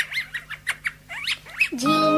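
A run of short bird chirps on a music track, each a quick high whistle that rises and falls, several a second. Near the end a child's singing voice comes in.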